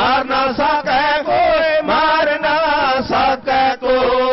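A male dhadi singer chanting a Punjabi vaar (ballad) in quick, rhythmic phrases with short breaks between them.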